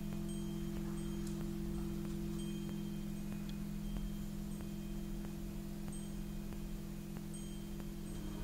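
Wind chimes ringing with scattered short, high notes, over a steady low drone.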